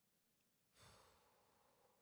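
Near silence, broken about three-quarters of a second in by a faint exhale, a sigh close to the microphone, that fades away over about a second.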